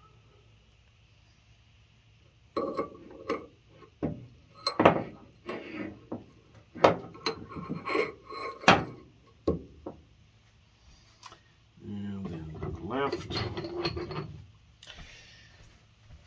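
Steel rocker arms and spacers clicking and knocking against the rocker shaft and the metal bench as they are fitted onto a Mopar 360 rocker shaft by hand, a run of irregular metallic clinks over several seconds after a quiet start.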